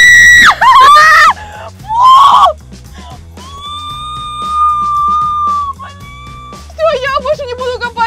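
A woman's loud, high-pitched screams, three short cries in the first two and a half seconds, over background music with a steady bass beat. Later a long held high note comes in, then a wavering sung line.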